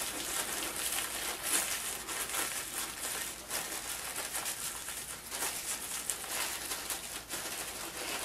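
A plastic package of fluffy artificial craft snow crinkling and rustling as fingers pull the snow out of it onto paper, in soft irregular scrapes and ticks.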